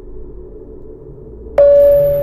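Intro sound effect: a low drone slowly grows louder, then near the end a single loud, bright ringing tone starts suddenly and holds steady.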